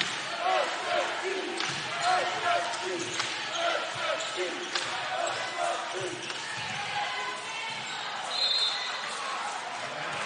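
A basketball is dribbled on a hardwood court over crowd chatter in an arena. Near the end one short, high referee's whistle stops play.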